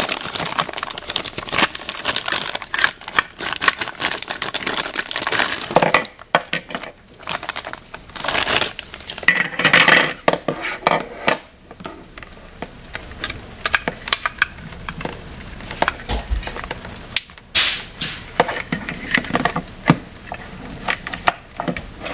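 Thin plastic packaging crinkling as toy pieces are unwrapped, then hard plastic parts of a toy sled clicking and knocking together as they are handled and fitted.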